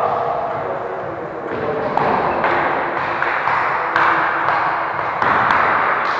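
A volleyball struck several times during a rally, each hit a sharp slap, over the echoing noise of a large sports hall.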